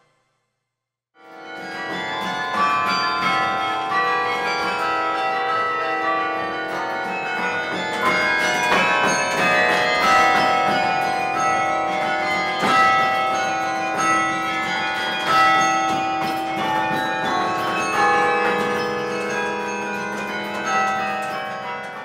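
Carillon of 49 bronze bells played from its baton keyboard: a melody of overlapping ringing bell notes that rises in from silence about a second in.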